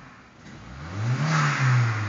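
A Volvo 740 turbo's turbocharged four-cylinder engine revved once, its pitch rising to a peak a little past halfway, then falling away, with a rushing hiss at the top of the rev.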